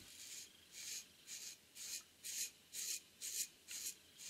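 Stainless steel knife blade shaving hair off a forearm: about eight short, faint scraping strokes, roughly two a second. The blade is sharp enough to shave right out of the box.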